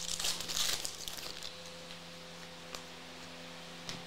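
Foil trading-card pack being torn open and crinkled, loudest in the first second and then settling to faint rustling.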